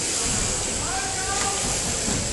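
Steady, hiss-like whirr of electric shearing machines running: overhead-driven handpieces cutting through fleece, with faint distant voices about a second in.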